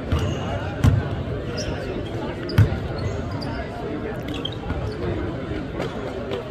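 Basketball bouncing on a hardwood court, a few separate low thuds with the loudest about two and a half seconds in, over the background voices of a large gym.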